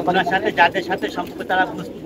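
Domestic pigeons cooing from the lofts under a man's voice talking.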